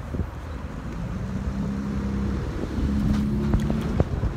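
Motor vehicle engine running close by, a steady low hum that comes in about a second in, over a low outdoor rumble.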